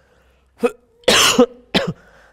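A man coughing three times: a short cough, a loud longer one, then a short one.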